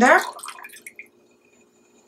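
A thin liquid being poured into a plastic blender cup, trailing off into a few faint drips within the first second.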